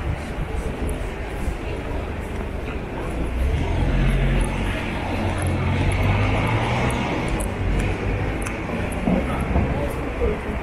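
City street ambience with the low engine rumble of a passing vehicle, which swells about three and a half seconds in and eases off after about eight seconds.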